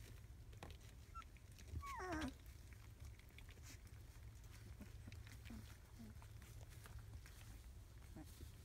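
Three-week-old rough collie puppies at play: about two seconds in one puppy gives a short whining yelp that falls steeply in pitch, and a couple of faint low squeaks follow later.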